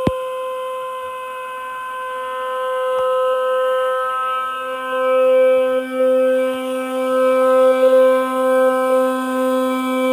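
An inflated 1982 Beaufort six-person liferaft venting gas with a loud, steady whistling tone. A second, lower tone joins about four seconds in, with a light knock at the start and another about three seconds in. The sound is typical of the raft's pressure relief valves blowing off excess inflation gas once the tubes are full.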